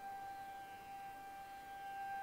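Faint background music holding one steady high note, with a slight waver to its pitch.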